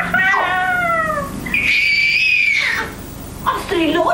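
Baby crying: two falling wails, then a long high-pitched squeal. A woman's voice comes in near the end.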